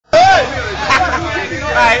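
Speech: loud voices over background chatter, with shouts of "No!" starting near the end.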